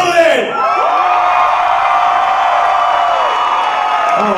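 Audience cheering and whooping, with long drawn-out yells held for a couple of seconds.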